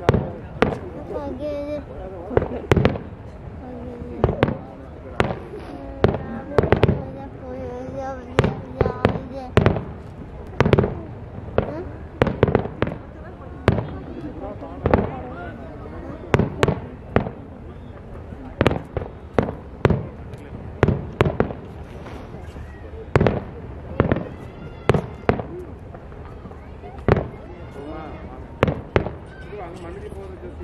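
Fireworks display: aerial shells bursting one after another in an uneven stream, about one to two sharp bangs a second, with voices underneath.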